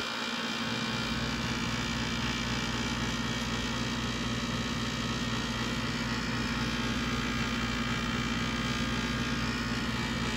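A steady electrical hum at an even level, with no change in pitch or loudness.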